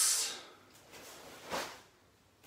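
The drawn-out hissing end of a shouted "oss" fades in the first half-second. About one and a half seconds in comes a brief swish, the rustle of a cotton karate gi as a barefoot karateka steps back on a tiled floor into fighting stance.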